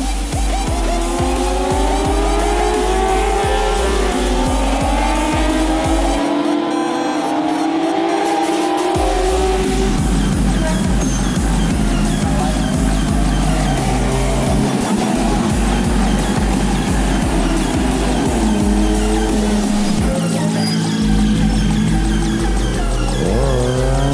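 Racing motorcycle engines revving hard and passing at speed, their pitch sweeping up and down with the throttle and gear changes, mixed with electronic dance music with a heavy, steady bass beat. The engine sweeps are strongest in the first half and come back near the end.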